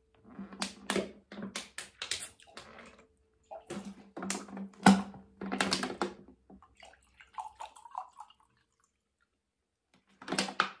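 A run of sharp clicks and crackles, then water poured from a plastic bottle into a drinking glass, its pitch rising as the glass fills for about a second and a half.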